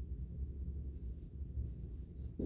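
Dry-erase marker strokes on a whiteboard, a few faint short scratches over a steady low room hum.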